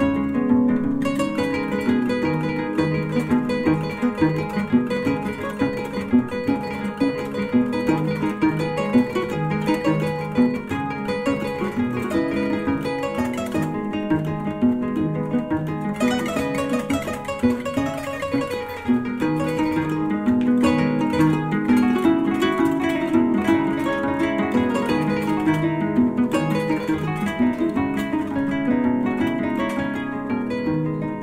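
Background music led by a plucked string instrument playing a steady run of quick notes.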